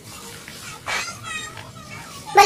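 A child's brief high-pitched cry about a second in, followed by a shorter, wavering call.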